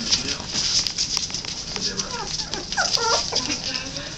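Puppies play-fighting: several short, squeaky yips and squeals around the middle, over the scratch and rustle of paws and bodies on the pen floor.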